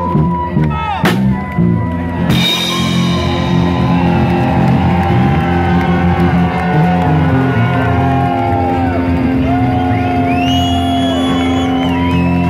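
Live rock band of electric guitars, bass and drums playing, with long held sung notes over the chords. Two cymbal crashes come about one and two seconds in.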